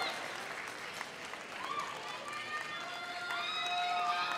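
Audience applauding, with voices calling out and cheering over the clapping.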